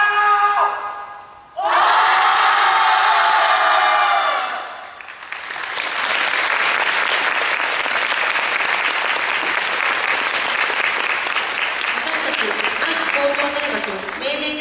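A short pitched call, then a loud held sound from the marching band lasting about three seconds, followed from about five seconds in by steady audience applause in a large hall.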